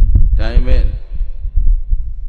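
A man's voice through a microphone: one short utterance about half a second in, then a pause. Under it a low rumble with soft thumps runs on the microphone.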